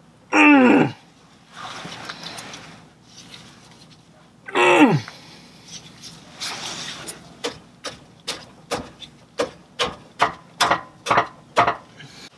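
A hand ratchet wrench clicking in a steady run of short strokes, about two a second, from about halfway in, as it works loose a bolt on the WRX's stock muffler. Earlier, a man's voice twice, each a short sound falling in pitch.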